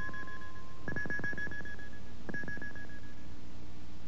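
Closing logo sting of a few electronic tones. A held note stops about a second in as a higher note enters and dies away, and a second higher note sounds a little after two seconds and fades. A steady low hum runs underneath.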